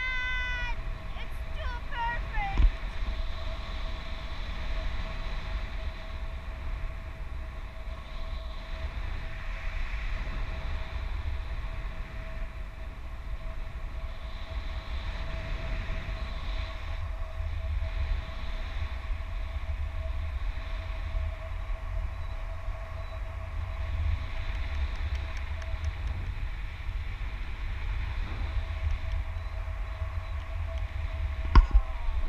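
Wind rushing over the action camera's microphone in paraglider flight, a steady low buffeting rumble and hiss. In the first couple of seconds there is a brief high, wavering voice cry.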